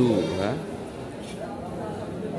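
A goat bleats once, briefly, near the start, mixed with a man's short spoken word, over background noise in the goat pens.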